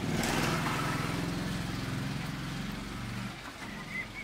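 A small motorbike's engine running as it passes close by, its steady hum fading out a little after three seconds in.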